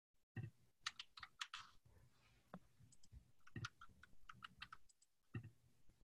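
Faint typing on a computer keyboard: quick irregular keystroke clicks, with a few heavier thuds among them.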